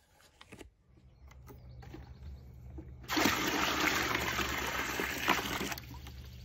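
Water running hard into a white plastic container, starting abruptly about three seconds in, over a faint low hum.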